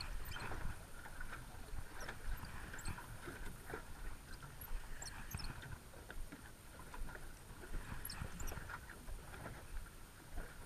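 Small waves lapping and slapping against the side of an aluminium boat, with many irregular small knocks, and wind buffeting the microphone as a low rumble.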